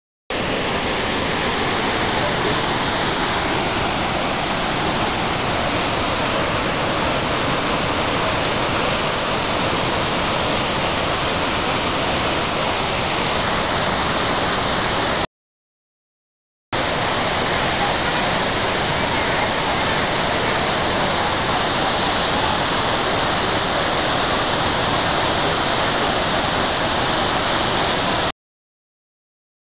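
Devi's Fall waterfall pouring into a rocky gorge: a loud, steady rush of falling water. It breaks off once midway for about a second and a half of silence, then resumes unchanged.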